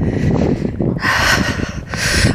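Wind rumbling on the microphone, with a person breathing out hard about a second in, a breathy hiss lasting about a second.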